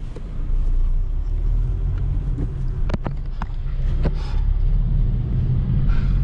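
A car's engine and road rumble heard from inside the cabin as the car pulls away and drives off, with a few short sharp clicks about halfway through.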